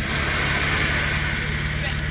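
A car engine idling steadily, with a hiss over it that fades out near the end.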